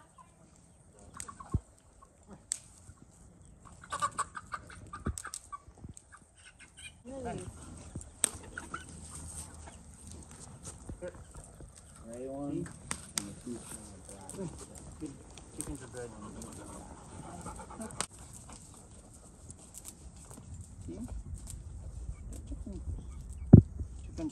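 A chicken clucking at intervals, with a few sharp knocks, the loudest near the end.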